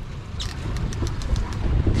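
Boat's twin Suzuki outboard motors running steadily at trolling speed, a low rumble, with wind buffeting the microphone.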